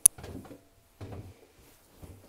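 A single sharp click, then soft footsteps of someone walking without shoes on a hardwood floor, two footfalls about a second apart.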